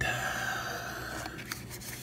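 A cardboard knife box rubbing and scraping against hands as it is picked up and handled, with a small click about one and a half seconds in.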